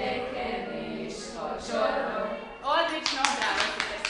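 Schoolchildren singing a Hungarian song together, the singing ending about two and a half seconds in, followed by brief clapping and voices.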